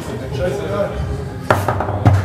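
Foosball table in play: a sharp, hard clack about one and a half seconds in, of the ball being struck by a player figure or hitting the table, with the wooden table body resonating after it. Faint voices murmur before it.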